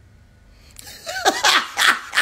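A man bursting into loud, hearty laughter about two-thirds of a second in: a run of open-mouthed "ha" bursts, about three a second, each falling in pitch.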